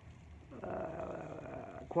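A man's long, drawn-out 'uhhh' of hesitation while he thinks. It is held on one steady pitch for about a second and a half, starting about half a second in.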